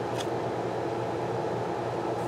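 Steady room noise: a low, even hum and hiss with no distinct events.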